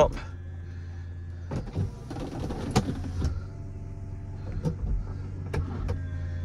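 Mercedes-Benz SL350 Vario folding hard top closing: the roof's electro-hydraulic pump runs with a steady low hum while the windows power up, with several sharp clicks from the mechanism as the roof and windows lock into place.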